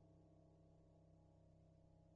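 Near silence, with only a faint steady low hum of several tones that slowly fades.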